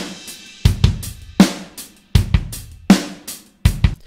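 Addictive Drums 2 sampled acoustic drum kit (Fairfax Vol. 1, Neutral preset) playing a basic beat: kick and snare alternate about every three-quarters of a second, with light hi-hat between them and a cymbal ringing out at the start.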